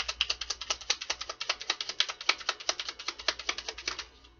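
Tarot deck being shuffled by hand: a fast, even run of card clicks, about ten a second, that stops at the end.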